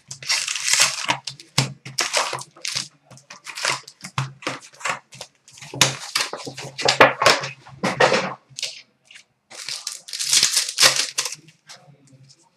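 Cardboard box of hockey trading cards being torn open and its wrapped packs handled: a run of irregular tearing and crinkling with short pauses between.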